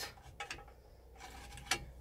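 Light metal clicks from a trailer's hitch coupling as its handle is lifted inside a hitch lock, a couple of faint ticks about half a second in and a sharper click near the end.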